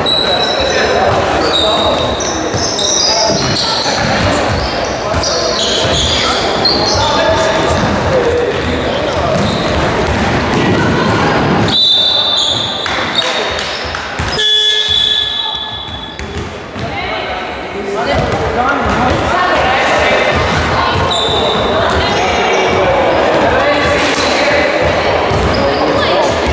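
Sounds of a youth basketball game in a sports hall: a basketball bouncing on the wooden floor, short high sneaker squeaks, and players' voices calling out, with a brief lull in the middle.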